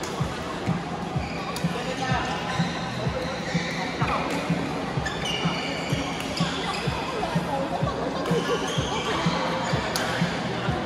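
Badminton play on several courts: rackets hitting shuttlecocks, sneakers squeaking on the court mats and feet landing in irregular thumps several times a second, over background chatter.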